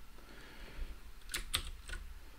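A few quiet computer keyboard keystrokes, sharp clicks in the second half.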